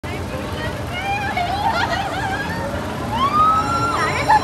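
Riders on an amusement park tower ride shouting and screaming as it starts to move, several wavering voices at once, with one long high rising scream held near the end.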